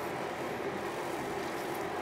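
Steady room noise: an even hum and hiss with no distinct events.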